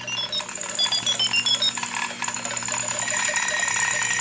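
Logo jingle music sped up to four times speed: a quick run of high-pitched chiming notes stepping up and down, then settling into steadier held tones over a sustained low note.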